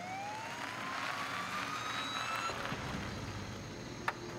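Police car siren wailing: one slow rise in pitch that fades out about halfway through.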